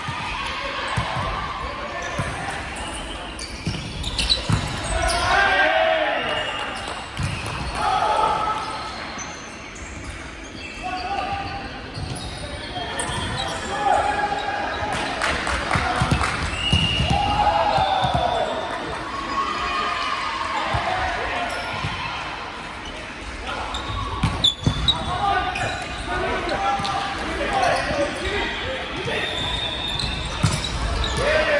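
Players' voices calling and chatting in a reverberant sports hall, with a volleyball bouncing on the hardwood court. Near the end comes a quick run of several sharp knocks.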